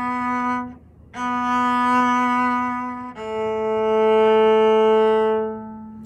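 Cello playing long, slow bowed notes: one note played twice with a short break, then a slightly lower note held for about two and a half seconds as a slow-bowed whole note, fading out near the end.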